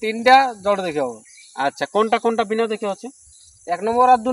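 Steady high-pitched drone of insects under a man's voice speaking in short phrases.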